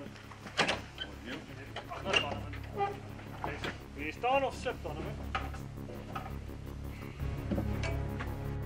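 Sharp knocks and clanks of gear being loaded onto an open hunting truck, with men's voices talking and a low steady hum underneath. Music comes in near the end.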